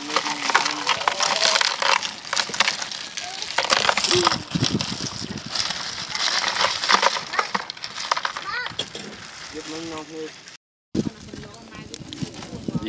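Ice chunks clinking and knocking against each other and against beer cans in a plastic bucket as more ice is tipped in from a plastic bag: a rapid, irregular run of small clicks and cracks.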